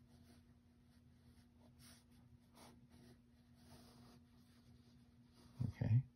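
A pen scratching across sketchbook paper in faint, irregular strokes as lines are drawn, over a low steady hum. A short voice sound comes just before the end.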